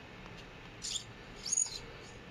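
Two brief high-pitched squeaks as hop-up chamber parts are worked and slid along a brass airsoft inner barrel, one about a second in and a shorter one about half a second later.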